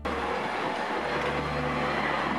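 Electric street tram passing along a city street: a steady rolling rush of wheel and motor noise that cuts in abruptly.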